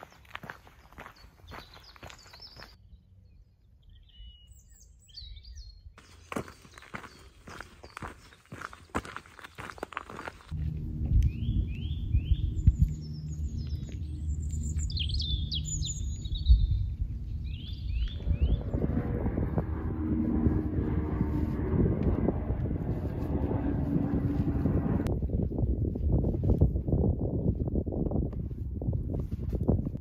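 Footsteps on a gravel trail with small birds chirping. From about ten seconds in, a steady low rumble lies under the birdsong.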